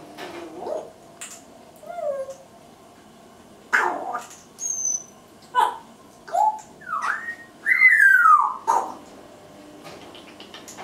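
Congo African grey parrot vocalizing: a string of short whistles, clicks and chattering calls with gliding pitch, and, about eight seconds in, a longer, louder whistle that falls in pitch.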